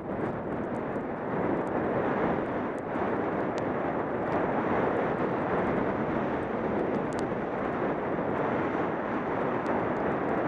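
Steady rush of wind on the microphone, mixed with skis sliding over snow during a downhill run, with a few faint small clicks.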